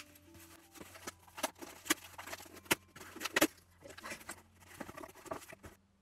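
Plastic shrink-wrap on a hardcover book being picked at and torn off by hand, a run of crinkles, crackles and sharp snaps, loudest in the middle.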